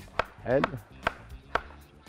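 Large kitchen knife slicing a raw carrot on a wooden cutting board: a few sharp chops, roughly half a second apart.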